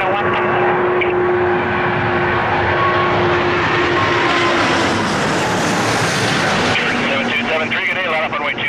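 Four-engine Airbus A340-600 airliner's Rolls-Royce Trent 500 engines passing low overhead on final approach, the jet noise swelling to its loudest and hissiest about five to six seconds in. It cuts off abruptly near the end to a more distant engine sound with radio talk.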